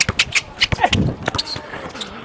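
A basketball being dribbled hard on an outdoor court, with sneaker footsteps, as a player drives to the basket: a quick, uneven run of sharp slaps.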